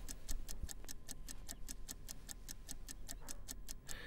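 Fast, even ticking of a countdown clock sound effect, several ticks a second, running under a price-drop countdown.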